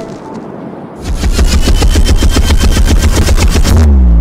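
Intro music for a logo animation: a melodic electronic phrase fades, then about a second in a loud, rapid, bass-heavy drum roll of even strikes begins. It ends in a falling pitch drop that cuts off.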